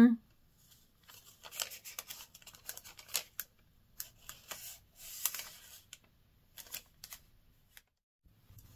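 A paper receipt being handled and looked over, with irregular crinkling and rustling in short bursts.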